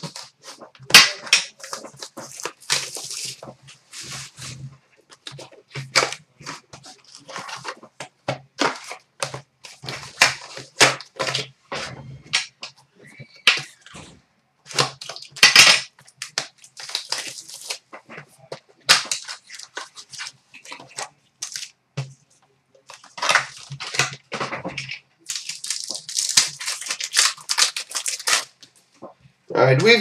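Hockey card packs being torn open by hand: quick, irregular bursts of crinkling and ripping wrappers, with sharp clicks and rustles as the card stacks are handled.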